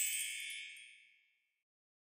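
The last bell-like tones of a short musical intro jingle ringing out and fading away, gone about a second in, followed by silence.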